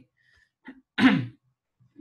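A man's single short sneeze about a second in, sharp and falling in pitch.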